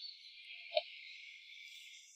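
Faint, steady high-pitched background ambience with a single short click a little under a second in.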